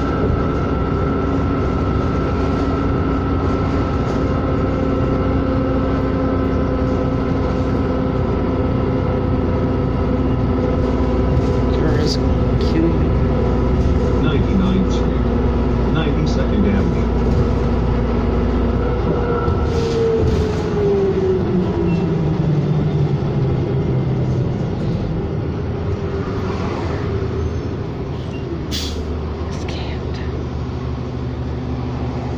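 Onboard sound of a 2007 New Flyer D40LFR diesel city bus under way: a steady engine and drivetrain drone with scattered rattles. About two-thirds of the way through, the engine pitch winds down and the sound eases as the bus slows.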